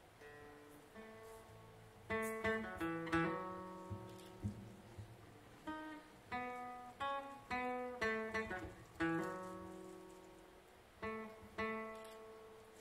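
Acoustic guitar playing an unaccompanied instrumental passage: picked notes and chords in short groups that ring out and fade, soft at first and louder from about two seconds in.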